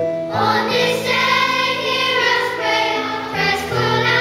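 A large children's choir singing a slow song together. A new sung phrase comes in about a third of a second in.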